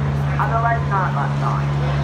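Steady low drone of a diesel engine in a one-third-scale miniature railway locomotive, running at an even idle. Voices talk over it.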